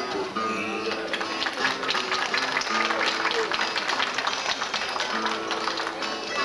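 Plucked guitars playing an instrumental passage between sung verses, with audience applause over most of it.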